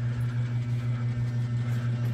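A steady low mechanical hum with one unchanging pitch.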